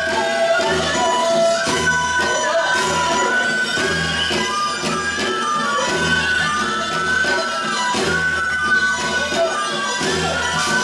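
Live Korean traditional folk music: a held, wavering melody line over a steady drum beat of about one stroke a second.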